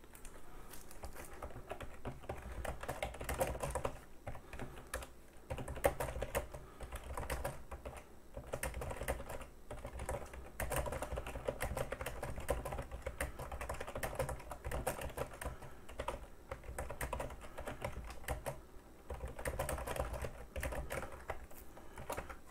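Typing on a computer keyboard: irregular runs of key clicks, broken by short pauses.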